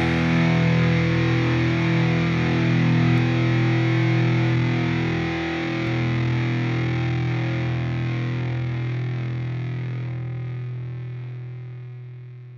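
Final chord of a rock song, distorted electric guitars held and left to ring, fading slowly toward the end.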